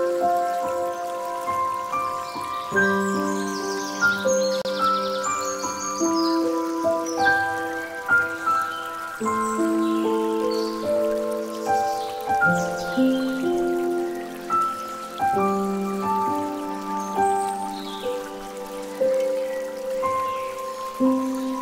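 Slow, soft instrumental music of long held notes moving stepwise, over the steady trickle and splash of water pouring from a bamboo fountain spout into a pool.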